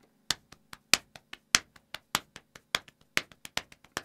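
Hands tapping in an alternating right-left rhythm, about five taps a second, with regularly spaced louder accented taps, roughly every third, picking out an alternate-picking accent pattern.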